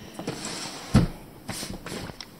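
Handling noise from a handheld camera: soft rustling with one sharp low thump about a second in.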